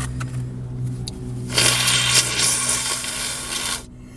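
A person blowing a congested nose hard into a tissue: one long, loud blow starting about one and a half seconds in and lasting about two seconds, then cutting off. The blocked nose is from a bad cold or flu.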